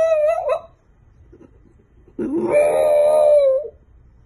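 French bulldog howling: a rising howl trails off about half a second in, then a second long howl begins about two seconds in, sweeping up and holding one pitch for about a second and a half.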